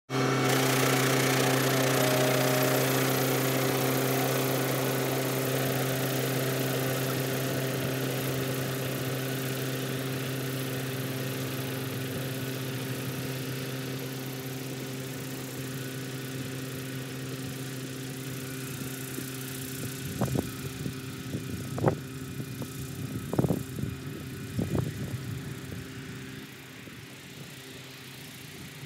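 Tractor engine running steadily while it drives away with a Niplo MP330 broadcast spreader throwing fertiliser, its even hum fading as it goes. A few short knocks stand out about twenty to twenty-five seconds in.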